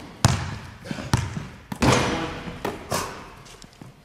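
A basketball bouncing on a hardwood gym floor: about half a dozen irregular bounces, each echoing in the hall.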